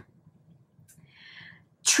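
A short, faint breath, likely through the nose, a little over a second in, in an otherwise quiet room.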